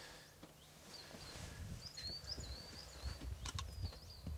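Faint outdoor ambience with a small bird's thin, wavering song starting about a second in and running for a couple of seconds, then briefly again near the end, over a low steady hum.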